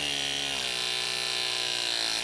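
RLS press-to-connect crimping tool with a 3/4-inch jaw running through its press cycle on a copper refrigerant fitting: a steady electric motor whine.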